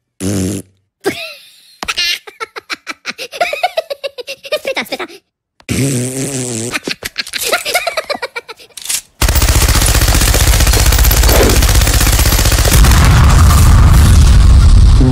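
Cartoon sound effects: a squeaky Minion-style voice babbling and laughing in short bursts, then from about nine seconds in loud continuous machine-gun fire running into an explosion.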